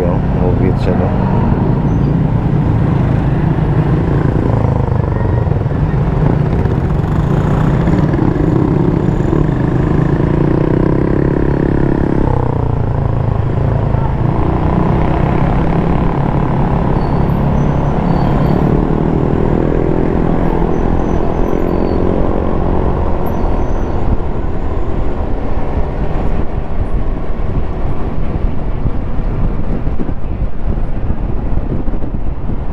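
Motorcycle engine running while riding in traffic, its pitch rising slowly as it accelerates and dropping abruptly about twelve seconds in, then climbing again, with road and wind noise on the microphone.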